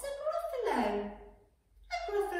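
A woman's voice in an exaggerated storytelling character voice, one long vocal sweep falling from high to low pitch that ends about a second and a half in; the voice starts again near the end.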